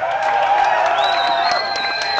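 Audience cheering and clapping between songs at a heavy rock show, with a steady high tone that starts about halfway and holds.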